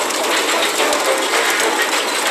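Dense, steady mechanical clattering with rapid fine ticking, like a machine's gears and ratchets working.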